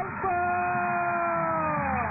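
A football commentator's long drawn-out shout of "haa", held for nearly two seconds with its pitch slowly sinking, over steady background noise from the match broadcast.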